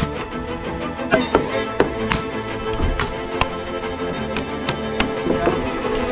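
Background music with held string notes, over which about ten sharp, irregularly spaced knocks sound: a pneumatic framing nailer and a hammer driving nails into 2x6 framing lumber.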